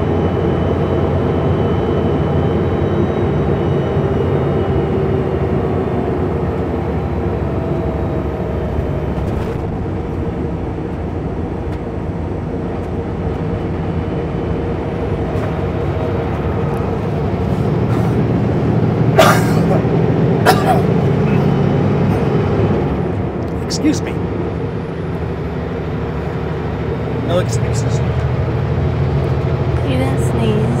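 Kenworth W900L semi truck's diesel engine pulling steadily under load up a hard climb, a low, even drone. A few sharp clicks come in the second half.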